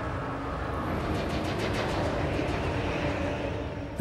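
A steady rumbling roar with soft background music under it, and faint regular ticking high up from about a second in.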